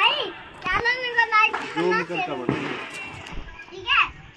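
High-pitched children's voices calling out excitedly, in several short, rising-and-falling cries.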